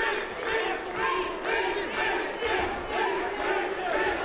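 Boxing arena crowd shouting, many voices overlapping.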